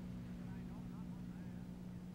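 Faint steady low hum over hiss, the background noise of an old television recording, with no speech.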